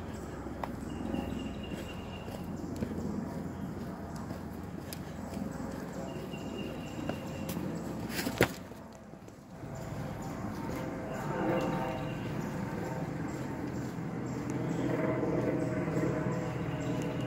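Footsteps of a walker and a leashed dog on a dirt and stone trail, with the rubbing and jostling of a handheld phone. A single sharp click about eight seconds in is the loudest sound.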